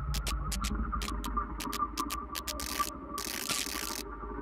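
Spark plug tester firing its plugs: sharp snapping ticks several a second, running together into two longer buzzing bursts in the second half as the tester is run up through its RPM range toward 7,000. A steady hum lies underneath.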